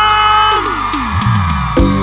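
Live technocumbia band music. A held chord fades out, then a run of falling low notes sweeps down. Near the end the drums and the full band come back in on a steady beat.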